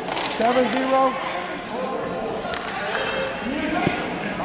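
Voices shouting in bursts in a large hall, with no clear words, and a few sharp knocks. The loudest knocks come about two and a half seconds in and just before the end.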